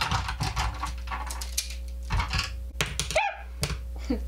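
A handful of plastic eyeliner pencils clicking and clattering against each other and a clear acrylic organizer as they are gathered up, in quick irregular clicks. A short rising squeak-like tone sounds about three seconds in.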